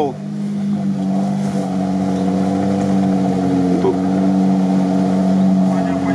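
Off-road vehicle engine running with a steady, even drone at constant pitch, coming up in level over the first second, while driving through water on a flooded track.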